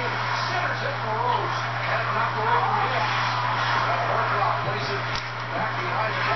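Faint background voices over a steady low hum, with one sharp click near the end.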